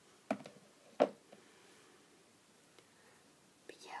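A woman's soft, partly whispered speech: a short word about a second in and another near the end, with a quiet pause of room tone between. A brief click comes just before the first word.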